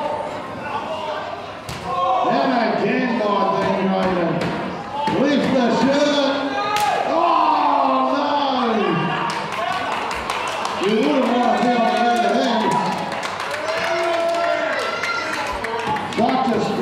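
Voices shouting and calling out over a wrestling match, with a sharp slam about seven seconds in, likely a body hitting the ring. There are small knocks and clicks in the second half.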